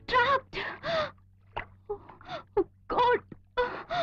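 A woman's voice in short, breathy, high-pitched cries or gasps, about ten of them in quick succession.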